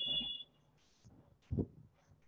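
A steady high-pitched beep-like tone that fades out about half a second in, followed by a single soft low thump about a second and a half in.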